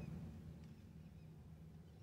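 Near silence: a faint, steady low hum inside a car cabin during a pause in speech.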